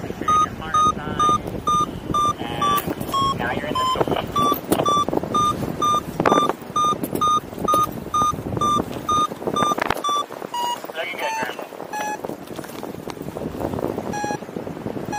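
Paragliding variometer beeping in a steady stream of short, evenly spaced tones, the sign of the glider climbing in lift. The beeps drop lower in pitch around ten seconds in, marking weaker lift, and rise again near the end. Wind rushes past the helmet microphone throughout.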